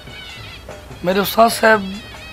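A man's voice: after a pause of about a second, a short spoken phrase begins.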